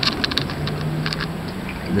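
Light clicks and taps of hands handling sensor cables and fittings, over a low steady hum.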